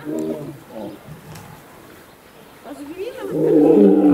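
Lion growling in a squabble in which the dominant male is intimidating a younger lion. One short growl comes at the start, and a longer, louder one builds from about three seconds in.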